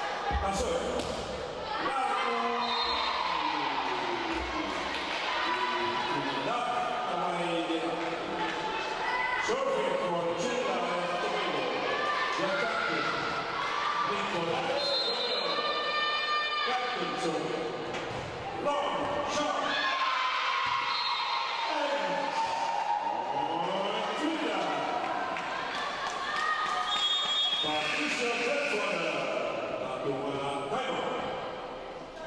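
Indoor volleyball match in an echoing sports hall: balls are struck and bounce on the court amid continuous shouting and calling from players and spectators, with short shrill whistle blasts about halfway through and again near the end.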